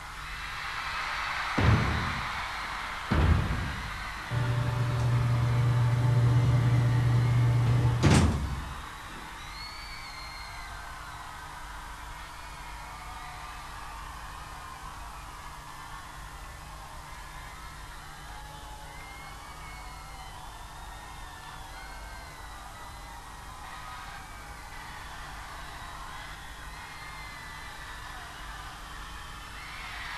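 Sci-fi sound effects from a concert's opening film, played over the arena sound system: two heavy mechanical clunks, then a loud steady low machine hum for about four seconds that ends in a sharp slam like a heavy door shutting. After that a quieter steady drone with faint high wavering shrieks from the crowd.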